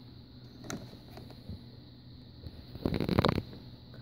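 Handling noise from a small plastic clamp meter being repositioned on a car battery cable: a few faint clicks, then a short burst of scraping and rustling about three seconds in, over a faint steady hum.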